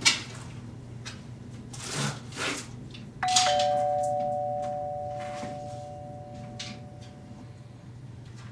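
Two-note doorbell chime about three seconds in, a ding and then a lower dong, ringing out slowly over several seconds. Before it come a few knocks and clatters of things handled on a kitchen counter, over a low steady hum.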